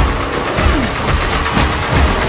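Loud film-trailer soundtrack: dense dramatic music packed with rapid percussive hits.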